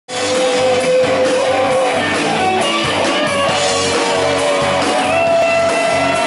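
Live rock and roll band playing loud with electric guitars and drums, a voice singing over it.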